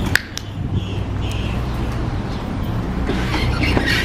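Steady low rumble of outdoor background noise, with a sharp click just after the start and a louder hiss near the end.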